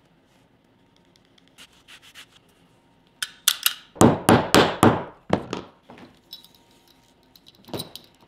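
Edge of a small leather strap being rubbed by hand with a finishing tool: a few faint scrapes, then about three seconds in a run of about ten quick back-and-forth rubbing strokes, and one more near the end.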